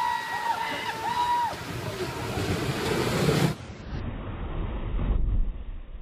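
Water rushing down a steep concrete chute. A long high yell rides over it in the first second and a half. The rush builds, and a deep, churning splash comes near the end where the chute empties.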